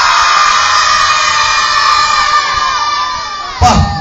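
A crowd shouting and cheering together in one long sustained cry of many overlapping voices, tapering off near the end.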